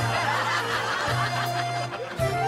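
A group of people chuckling and laughing over light comedy music with a bass line. The laughter is strongest in the first part.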